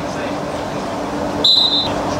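Referee's whistle, one short high blast about a second and a half in, over the murmur of voices in a sports hall.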